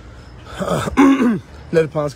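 A man's voice close to the microphone: a short throaty vocal sound about half a second in, like a throat being cleared, then speech starting again near the end.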